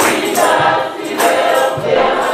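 Congregation singing a gospel song together, with a man singing lead into a microphone and a tambourine beating along.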